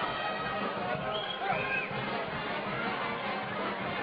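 Indistinct, overlapping voices, running on without a break.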